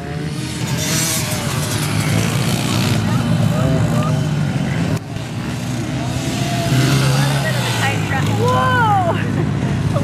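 Small dirt bike engines, among them Honda CRF110s, running and revving on a motocross track, their pitch rising and falling as the riders throttle on and off. The sound dips briefly about halfway through.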